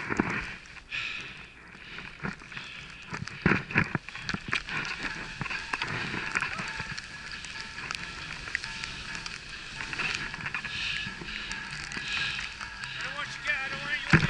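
Skis hissing through deep powder snow in a steady wash of noise, with wind on the microphone and a few sharp knocks, strongest in the first few seconds.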